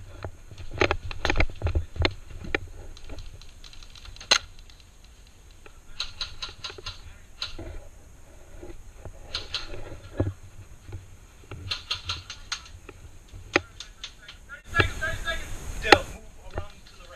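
Scattered sharp clicks and knocks, with faint, indistinct voices in between. A dense burst of rustling noise comes near the end.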